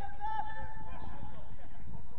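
Footballers shouting to each other across the pitch: one long held call at the start, then shorter calls, over a low rumble.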